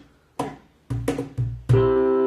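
A cajón played with the hands: a few sharp slaps with gaps between them, then an electric keyboard comes in with held chords near the end as the band starts the song.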